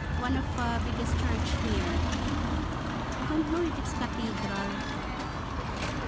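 Street ambience: passersby talking, with a motor vehicle's engine humming low for the first half or so before fading away.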